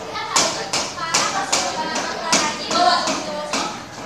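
A series of sharp taps, about six in four seconds at uneven spacing, over spoken voices.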